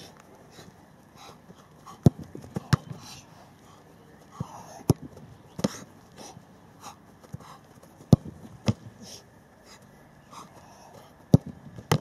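Football shots on a goalkeeper, heard as sharp thuds in pairs about half a second apart, four times: the ball being struck, then caught or hitting the ground as the keeper dives. Heavy breathing can be heard between the shots.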